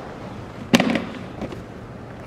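Clear plastic storage tub being opened: a sharp click about three quarters of a second in, followed by a fainter knock about half a second later.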